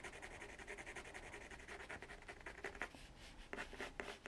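Water-soluble colouring pencil scratching across watercolour paper in quick, short shading strokes, faint and rhythmic at several strokes a second.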